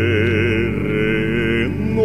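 Male bass voice singing a long held note with vibrato over a sustained accompaniment chord, moving to a new note near the end.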